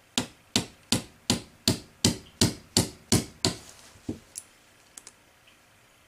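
Small hammer tapping a steel pin into the lower tang assembly of a Winchester Model 94AE, the part resting on a wooden block: about ten even strikes, roughly three a second, then two lighter taps.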